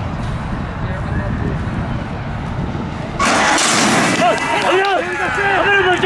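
Spectators murmuring, then about three seconds in a sudden loud clattering burst as the horse-racing starting gate springs open, followed by many voices shouting as the horses break.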